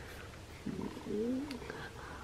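A woman's quiet, wordless murmur, its pitch rising then falling, a little past halfway through, with a faint click as a plastic CD jewel case is handled.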